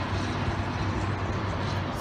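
Steady rumble of road traffic, an even noise with a low hum and no distinct events.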